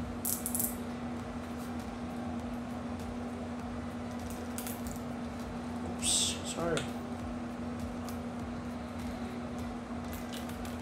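A steady low hum, with two brief scratchy rasps, one about half a second in and a louder one about six seconds in, as line is pulled from a Shimano Ocea Jigger conventional reel against its drag. The drag is set too tight.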